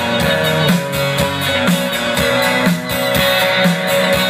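Live country band playing an instrumental passage: strummed acoustic and electric guitars over a steady drum beat.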